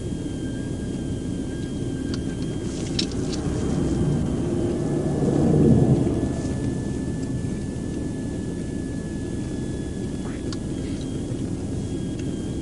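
A pickup truck passing close by on the highway, its tyre and engine noise swelling to a peak about halfway through and then fading away, over a steady low road rumble.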